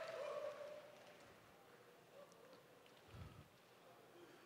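Near silence: room echo fading out, with a faint held tone for the first two seconds or so.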